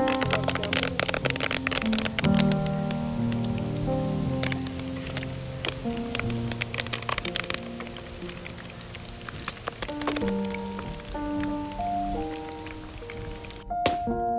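Pearl spot fish and fresh curry leaves shallow-frying in hot oil in a pan: dense sizzling and crackling pops, thickest in the first few seconds and again about ten seconds in, under background music with slow sustained notes. The sizzle stops abruptly just before the end.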